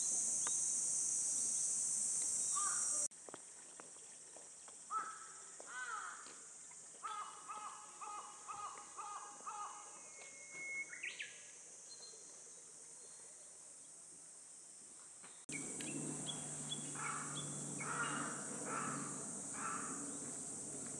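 A steady high-pitched drone of cicadas in summer trees stops suddenly about three seconds in, leaving birds calling over quieter outdoor ambience, among them crows cawing in short runs of calls. The cicada drone cuts back in a few seconds before the end, with more crow calls over it.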